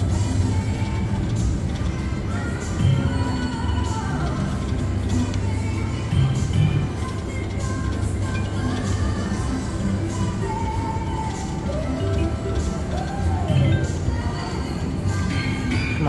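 Slot machine game music and jingles playing through several spins of the reels, over a steady low hum.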